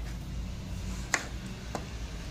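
Two short, light taps about half a second apart over a low, steady background hum.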